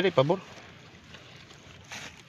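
A brief spoken sound or exclamation at the start, then faint, steady background noise with no distinct event.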